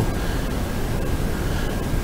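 Steady background noise: an even hiss with a low rumble underneath, unchanging throughout.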